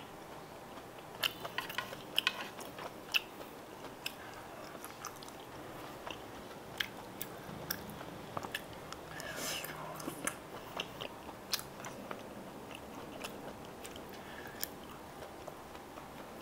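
A person chewing food close to the microphone, with many small wet clicks and smacks from the mouth at irregular intervals and a longer breathy sound about nine seconds in.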